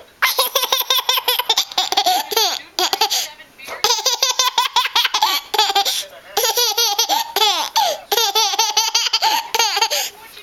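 A toddler laughing loudly in three long fits of quick, pulsing giggles, with short pauses about three and a half and six seconds in.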